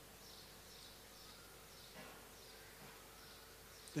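Near silence in a pause of speech: faint room tone with a low steady hum and faint high chirps repeating about twice a second.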